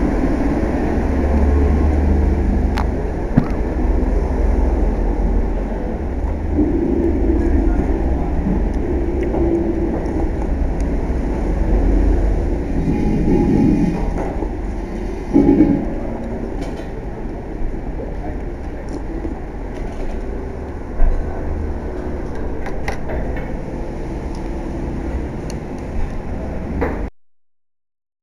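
Small eatery ambience picked up by a table-top camera microphone: a steady low rumble, muffled background voices, and a few short clinks of a spoon against a bowl.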